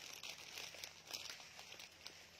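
Faint crinkling of a clear plastic garment bag being handled, with a few short crackles.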